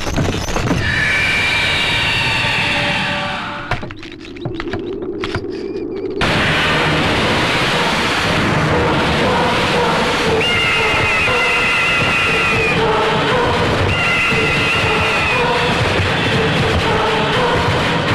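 Film soundtrack music. A horse neighs over it in the first few seconds. The sound drops away briefly about four seconds in and comes back loud about six seconds in.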